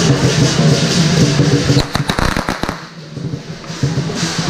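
Lion dance percussion playing, cut across about two seconds in by a quick string of firecracker pops lasting about a second. A short lull follows before the percussion picks up again near the end.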